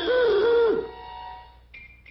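A cartoon character sings a loud, wavering held note that dips in pitch several times and breaks off under a second in. A quieter held instrumental note fades out behind it, and a brief high tone sounds near the end.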